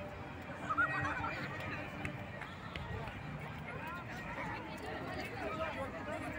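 Children squealing and shouting over the chatter of a crowd, with a loud high squeal about a second in.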